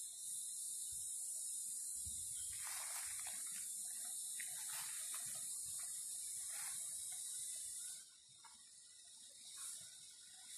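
A loud, high-pitched insect chorus holds steady, then drops away sharply about eight seconds in to a softer, pulsing buzz. In the middle, footsteps crunch through dry leaf litter.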